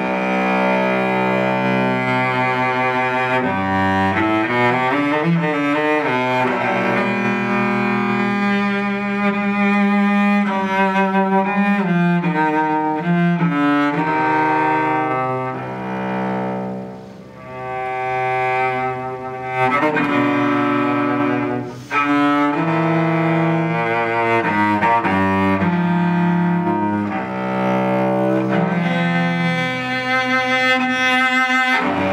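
Amore cello played solo with the bow: a melodic passage of sustained, resonant notes changing every second or so, with some quicker runs and a brief softer moment about two thirds of the way through.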